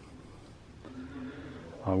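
A quiet pause in a man's talk. A faint low hum comes in about halfway through, and his voice starts again just before the end.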